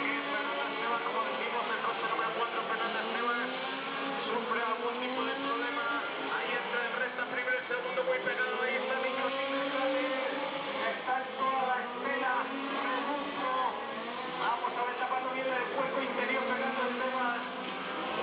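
Several radio-controlled Mini Cooper 4WD race cars running together on the circuit, their engines rising and falling in pitch as they accelerate and brake through the corners.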